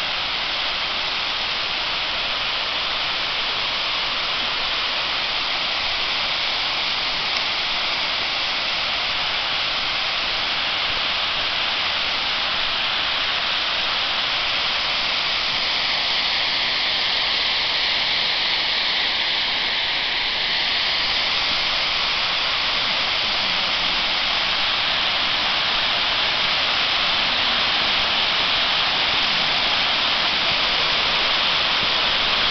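Water overflowing a masonry dam and cascading down its stepped stone face: a steady rushing of falling water that grows gradually louder.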